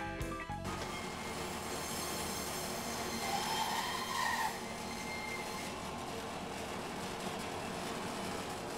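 Meat band saw running and cutting through a bone-in section of dry-aged beef, a steady mechanical whir. A higher-pitched whine rises and falls between about three and four and a half seconds in as the blade works through the piece.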